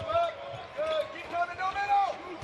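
A basketball dribbled on a hardwood court, low thuds, with short high squeaks of sneakers on the floor.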